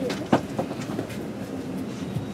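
Steady hum inside a passenger railway carriage, with footsteps and knocks from people moving along the corridor with luggage; one sharp knock about a third of a second in is the loudest sound.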